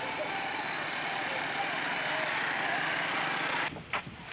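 Night street ambience: a steady wash of traffic noise with faint, indistinct voices mixed in. It cuts off abruptly near the end to a much quieter room tone.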